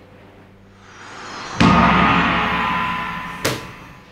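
Dramatic sound-effect sting: a rising swell leads into a sudden gong-like hit about one and a half seconds in, which rings and slowly fades. A brief sharp swish comes near the end.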